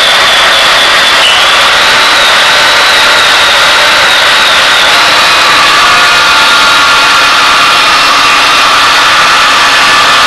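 Electric circular saw running, a loud steady motor whine with a high whistle that dips briefly about a second in and otherwise holds an even pitch.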